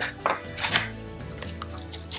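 A few light clacks of wooden rubber stamps and a plastic storage box being handled, over faint background music.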